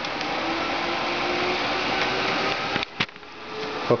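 A rack-mounted home server's cooling fans, including a 120 mm front fan, running with a steady whoosh. The sound drops away suddenly about three seconds in, with a single click.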